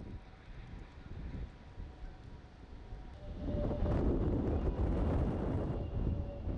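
Wind rumbling on the microphone over lake waves washing across concrete shoreline steps, louder from a little past halfway.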